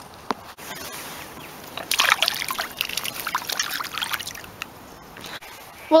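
A short burst of splashing and sloshing water about two seconds in, as a small sunfish is let go back into the pond.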